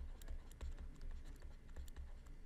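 Faint clicks and scratches of a stylus writing on a tablet surface, a scatter of light taps, over a low hum.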